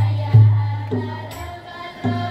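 Marawis ensemble playing: deep booming strikes on a large frame drum, about two a second, each ringing and dying away, under a group of voices singing a devotional melody together.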